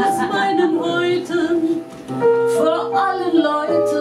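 A woman singing a German cabaret chanson with piano accompaniment. Her sung line ends about two seconds in, and the piano carries on alone with sustained chords.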